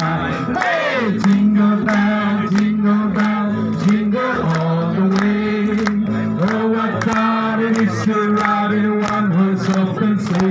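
A group singing a Christmas carol over music with a steady beat of about two strokes a second.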